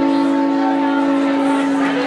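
Pedal steel guitar holding a steady, sustained chord as the song ends.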